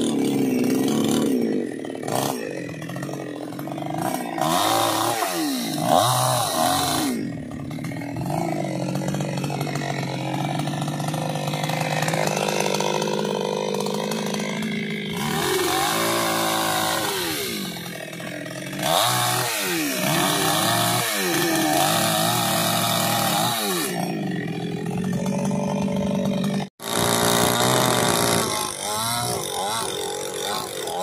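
Chainsaw cutting tree branches, revving up and down over and over so its pitch keeps rising and falling. The sound drops out for an instant near the end.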